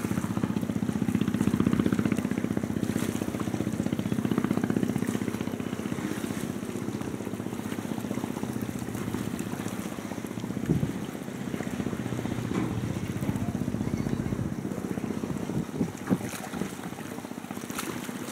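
Scrap-handling crawler crane's diesel engine running steadily, a low hum with a fast even throb, while its orange-peel grapple works the scrap pile; a few short knocks of metal scrap stand out, the clearest about eleven seconds in and again near sixteen seconds.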